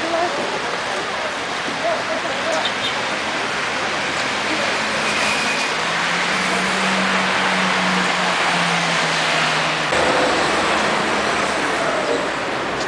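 City street traffic noise with the voices of passers-by; a passing vehicle's engine hum swells in the middle and fades. The sound changes abruptly about ten seconds in.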